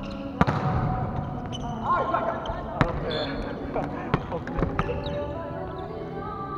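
A volleyball being played in a gym: sharp slaps of hands hitting the ball, the loudest about half a second in and several more through the rally, each with a short hall echo. Players' voices call out between the hits.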